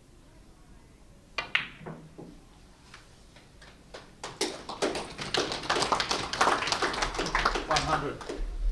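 A billiard cue strikes the cue ball with a sharp click about a second and a half in, followed by the clack of ivory-style balls and a red dropping into a pocket. From about four seconds in the audience applauds as the shot takes the break to a century.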